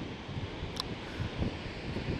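Steady rushing roar of Shoshone Falls' waterfall, with wind buffeting the microphone in low gusts and one brief click a little under a second in.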